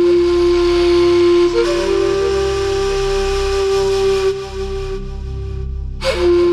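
Background music: a slow melody of long held notes, with one note stepping up slightly about a second and a half in, over a low sustained bed; it drops back to a quieter layer near the end.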